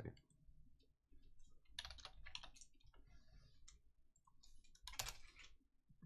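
Near silence, broken by faint scattered clicks and two brief rustles, about two seconds in and about five seconds in.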